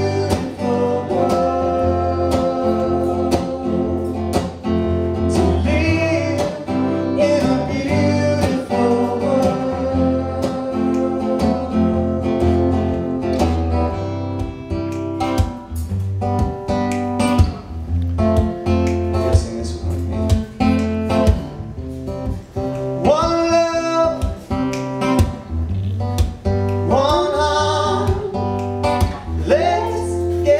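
Live acoustic guitar being strummed, with singing over it; the vocal line slides and swoops more in the second half.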